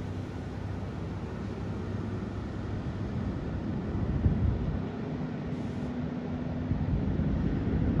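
Wake boat with a 6-liter, 400 hp inboard engine running under way, fully ballasted: a steady engine drone with the rush of its hull and wake through the water, the hum growing a little stronger in the second half.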